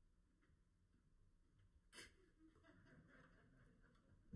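Near silence: room tone, with one faint sharp click about halfway through.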